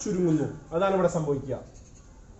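A man's voice speaking, with drawn-out vowels, for about a second and a half, then a pause.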